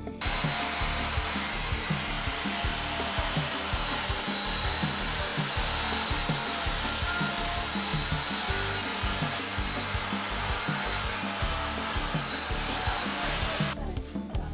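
Steady, loud mechanical whir with hiss from running machinery at a building site; it cuts in and cuts off abruptly. Quiet background music goes on underneath.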